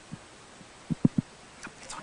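Handling noise from a handheld microphone being passed from one person to another: several short, dull thumps, three in quick succession around the middle. The sound goes with a microphone swap after the speaker's first microphone failed to carry her voice.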